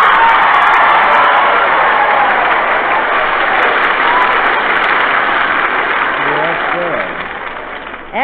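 Large live audience laughing and applauding after a joke, loud at first and dying away over several seconds. The sound is narrow and muffled, as on an old 1940s radio-broadcast recording.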